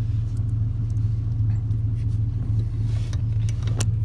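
Steady low hum of the Silverado's 5.3-litre V8 idling, with a few faint clicks and taps as a plastic bracket is handled.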